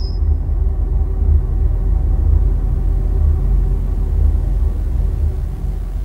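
Deep, steady bass rumble of a TV programme's title-sequence sound design, a low drone under the animated show ident.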